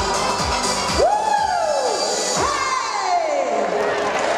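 Live schlager pop music with a steady kick-drum beat about twice a second, which thins out after about a second. Crowd cheering follows, with two long whoops that rise sharply and then slide down in pitch.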